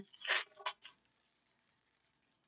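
Stack of baseball trading cards being handled, with card stock sliding and flicking against card stock. A few short rustles and clicks fall in the first second.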